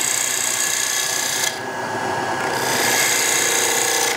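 Bowl gouge shear-cutting the outside of a small spinning wooden bowl on a wood lathe: a steady hiss of shavings coming off. The cut eases for about a second, about one and a half seconds in, then picks up again. Near the end a faint steady hum of vibration joins in.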